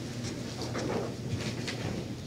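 Faint, soft footsteps on carpet, a few steps about half a second apart, over a steady low room hum.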